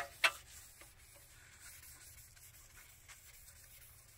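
A cloth rubbing over a polished chrome bumper, a faint rubbing, with two sharp clicks a quarter of a second apart right at the start.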